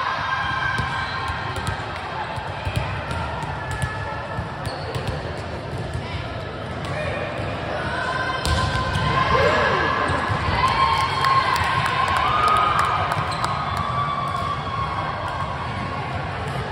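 Volleyball being played in a large gym: sharp slaps of hands and forearms on the ball through a rally, the loudest hit about halfway through, with players' calls and shouts rising in the second half.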